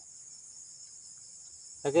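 Steady, high-pitched chorus of insects such as crickets, with a man's voice starting near the end.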